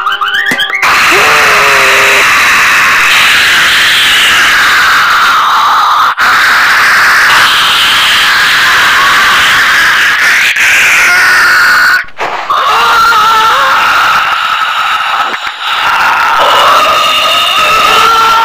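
Deliberately blown-out, extremely loud audio: a dense wall of distorted noise with wavering pitched tones through it, cutting out briefly a few times.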